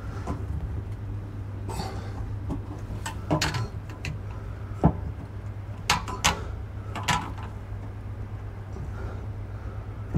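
Hands working a slipped-off water pipe connection under a bar counter, trying to push it back into place: scattered clicks and knocks, a few sharper ones in the middle, over a steady low hum.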